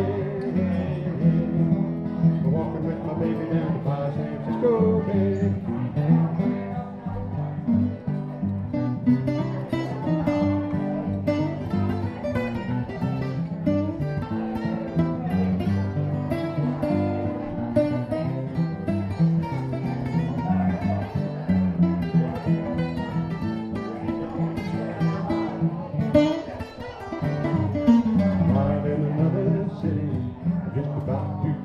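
Live acoustic string band playing an instrumental passage of a folk-blues song: mandolin and strummed guitars keep up a steady rhythm, with a brief drop in level about four seconds before the end.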